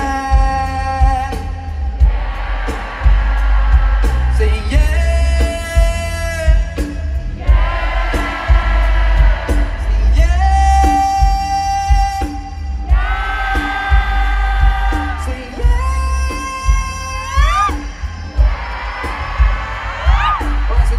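Live pop ballad played through a stadium sound system and recorded from the crowd: long held notes from voice and guitar, several sliding upward near the end, over a heavy low rumble, with whoops from the crowd.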